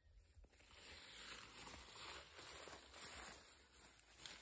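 Faint rustling and scraping of hands digging through loose soil among sweet-potato vines.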